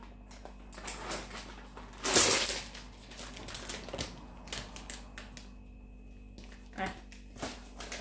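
Plastic food packaging crinkling and rustling with small clicks as a tray of minced meat is peeled open and emptied into an enamel pot, with a louder crackling burst about two seconds in.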